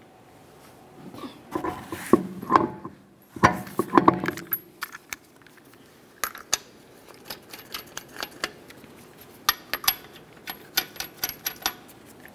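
An alloy wheel knocks and scrapes as it is hung on the hub. Then come many small metallic clinks and clicks as steel lug nuts rattle together in a gloved hand and are started on the wheel studs by hand.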